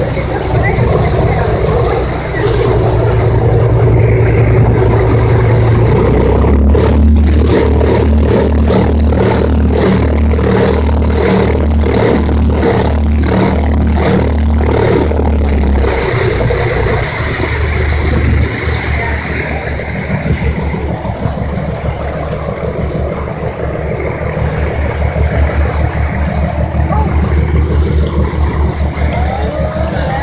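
A motorboat's engine running under way, its low drone shifting in pitch, with water rushing past the hull and wind on the microphone. Through the middle of the stretch the sound pulses about twice a second.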